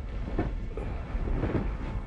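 A steady low rumble or hum in the background of an old TV recording, with a few faint knocks from people moving about, such as footsteps and a chair.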